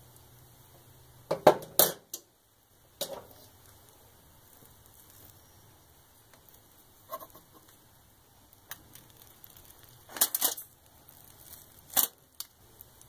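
Metal fork and knife clinking and scraping against a foil-lined roasting pan while cutting a cooked pot roast, in several short bursts with quiet pauses between.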